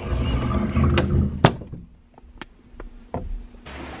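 Camera microphone being handled and rubbed against hair and clothing: a low rumble with rubbing for about a second and a half, two sharp knocks, then a few fainter clicks.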